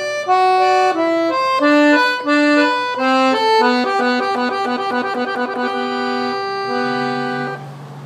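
Piano accordion playing a melody, a run of short single notes that gives way to longer held notes, the last note stopping about seven and a half seconds in.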